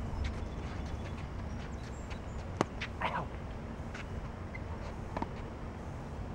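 Tennis ball struck by a racket: one sharp crack about two and a half seconds in, followed by a short scuffing burst, and a fainter second hit about five seconds in, over a steady low background rumble.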